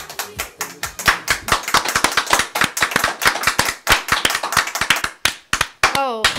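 Hand clapping from a small group, dense and fast at first, then thinning to a few last claps near the end.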